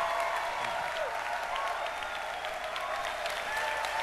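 A large audience applauding, a steady wash of clapping.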